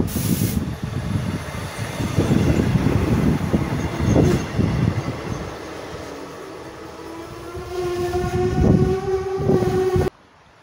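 Diesel railbus SA103-004 running through a station at speed: a loud rumble of wheels on rails for the first few seconds, easing off as it moves away. Over the last few seconds a steady tone swells up and rises slightly in pitch.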